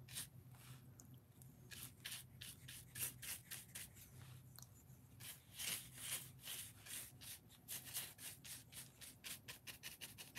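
Paintbrush bristles scrubbing and stippling a paint wash into textured foam: a quick run of faint scratchy strokes, several a second, with short pauses about one and four seconds in.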